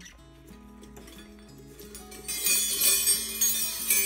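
Background music with a steady run of low notes; from about two seconds in, metal spoons and forks on a homemade silverware wind chime clink and jangle together, louder than the music.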